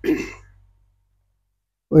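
A man briefly clearing his throat, then about a second of complete silence.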